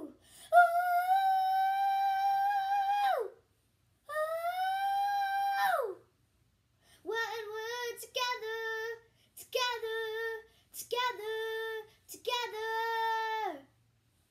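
A young girl singing unaccompanied, without words: two long held notes that each slide down as they end, then a run of shorter, lower notes in quick phrases.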